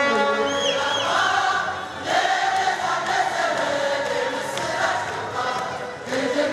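Many voices singing together in a chant-like melody, with a short dip in loudness about two seconds in.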